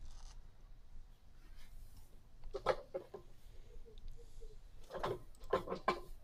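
Quiet room tone with a faint, steady low hum, broken by a single softly spoken word about halfway through.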